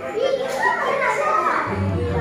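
A girl laughing hard, her high voice rising and falling in pitch, over background music.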